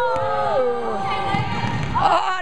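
Drawn-out vocal cries from people on a basketball court, overlapping pitched calls that bend and hold for about a second and a half before fading near the end.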